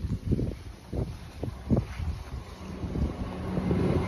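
Wind buffeting the microphone: low, uneven rumbling with a string of short thumps.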